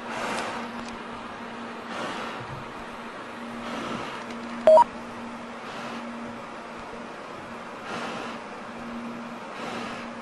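Open radio link between the stratospheric capsule and mission control: a steady hiss over a low hum, with soft swells of noise about every two seconds. A short two-tone electronic beep about halfway through is the loudest sound.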